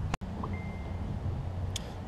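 Quiet outdoor background: a low steady hum with a brief thin high tone about half a second in and a short click near the end, following a sudden dropout at an edit.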